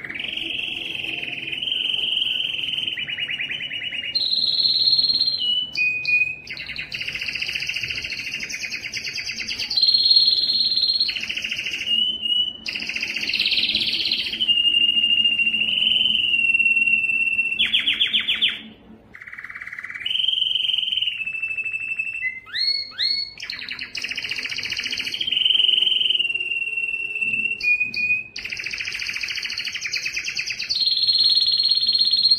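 Domestic canary singing a long, continuous song of rapid trills and held whistles, each phrase a second or two long and shifting in pitch, with a short break about two-thirds of the way through followed by a quick run of rising notes.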